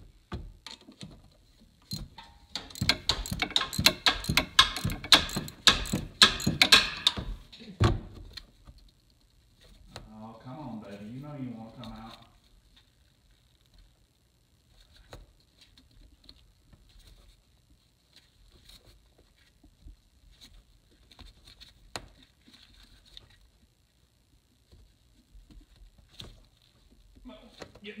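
Ratchet and socket clicking and metal parts clattering for several seconds as a broken spark plug's extractor is worked out of the plug hole, followed by a brief muffled voice and a few small clicks of handling.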